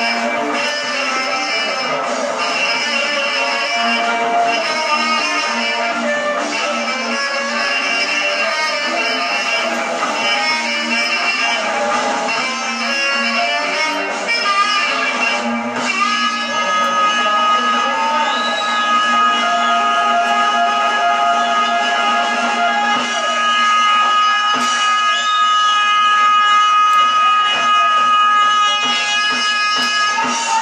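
Live showband music led by electric guitar over bass and drums. About halfway through, one high note is held steadily to the end.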